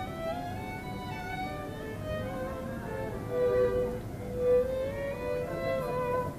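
Two violins playing a duet in two parts: bowed, held notes moving from one pitch to the next, with louder swells about three and a half seconds in and again a second later.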